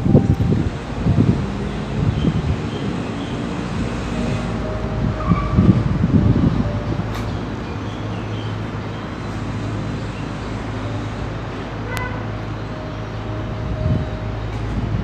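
Building-site background noise: a steady low machine hum with a few low rumbling swells, and one short click with a brief ring about twelve seconds in.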